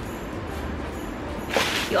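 A short, sharp swish about a second and a half in, over a low steady background.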